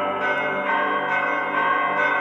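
Sustained, bell-like notes from an electronic keyboard, a few notes sounding together and new ones coming in about half a second and a second in.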